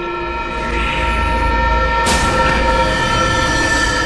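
Horror film score: a drone of many held tones over a low rumble, with a sudden loud hit about two seconds in.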